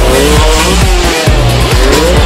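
Motocross bike engines revving in rising and falling sweeps over loud electronic music with a heavy, steady beat.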